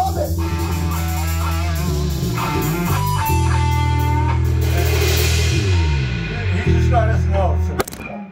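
Live rock band playing: electric guitar, electric bass and drum kit, the guitar holding long bent notes over the bass and drums. The band stops on a final hit just before the end.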